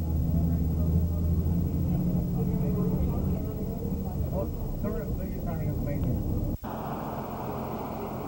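A vehicle engine droning low and steady under voices talking, then, after a sudden cut about six and a half seconds in, an even rushing noise of a boat's motor and wind on the water.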